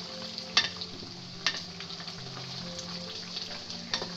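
Chicken and potato curry sizzling in an aluminium pot as a wooden spoon stirs it, with two sharp knocks of the spoon against the pot about half a second and a second and a half in.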